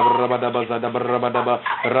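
A man praying aloud in tongues: a fast, unbroken stream of repeated syllables like 'daba-daba, ada beraba', with a short pause near the end.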